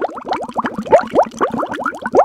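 Bubbling, plopping sound: a fast run of short rising blips, several a second, starting suddenly.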